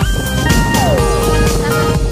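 Background electronic music with a steady beat; a held synth note slides down in pitch about a second in.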